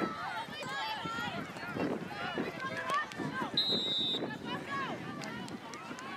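Many overlapping voices of players and spectators calling out across an outdoor soccer field, none of it clear speech, with a brief high steady tone a little past halfway.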